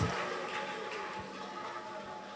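Faint sound of a large hall between shouts: the amplified voice's echo fades in the first moment, then a low murmur of a congregation praying.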